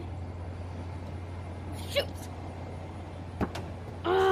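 A steady low hum of outdoor background noise, with two brief knocks, one about two seconds in and a sharper one near the end.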